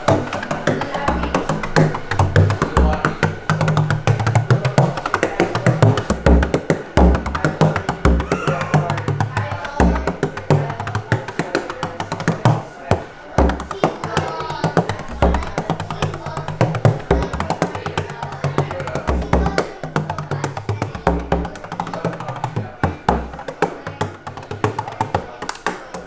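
Bodhrán, the Irish frame drum, played with a beater made of bundled skewers that rattle together: a fast, continuous rolling rhythm of crisp strikes with deep thumps coming in every second or two.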